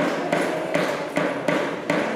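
A steady beat of sharp percussive taps, about three a second, keeping time between sung phrases of a forró chorus, over a faint held accompaniment.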